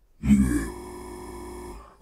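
A processed French voice sample: a brief voiced syllable, then a freeze effect holds that instant of the voice as a steady, unchanging buzzy drone for over a second, which cuts off abruptly just before the end.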